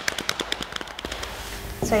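A rapid run of sharp taps, about a dozen a second, which thins out near the end: body percussion imitating thunder.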